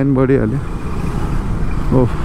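Motorcycle engine running and wind rushing past the microphone while riding in city traffic, a steady low rumble. A short voiced sound from the rider in the first half second.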